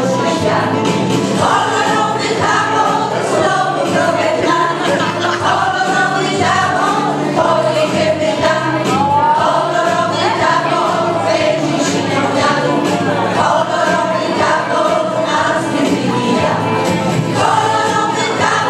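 Women's folk choir singing together, voices held in long continuous phrases at a steady level.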